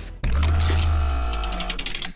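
Short musical transition stinger: a deep bass note under a sustained chord that fades, with a quick run of ticking clicks toward the end.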